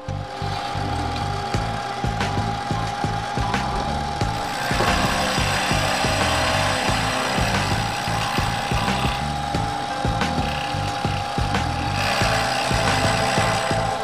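CNC milling machine's rotating cutter machining cast aluminium, a steady whine over a continuous rasping cutting noise. The cutting gets louder about a third of the way in and again near the end.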